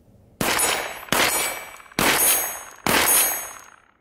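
Four 12-gauge shotgun shots from a Fabarm P.S.S., fired in quick succession a little under a second apart. Each shot is followed by a high metallic ring that dies away.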